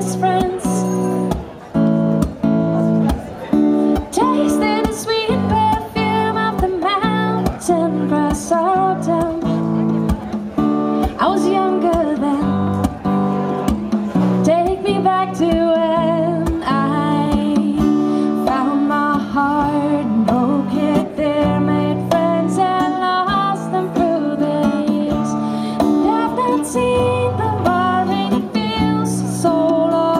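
Live acoustic band music: a strummed acoustic guitar with a wavering melody line over it, playing without a break.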